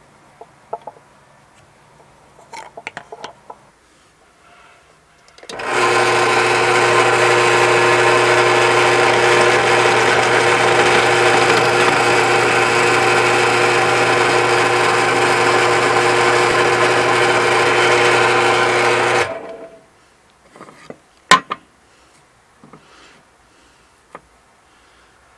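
Drill press motor starting up and running at a steady pitch for about fourteen seconds while its bit bores a hole through a wooden block, then stopping. A few light knocks come before it, and one sharp click about two seconds after it stops.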